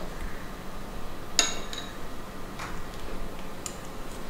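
A metal spoon clinking against a plate and bowl: one sharp, ringing clink about a second and a half in, then two fainter clicks.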